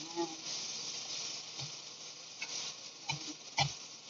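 Winged beans sautéing in a stainless steel pot with a steady sizzle, while a metal spoon stirs them and knocks against the pot four times.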